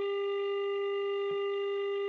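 Telephone line tone on a phone's speaker after a number has been dialled: one steady, unbroken tone held throughout.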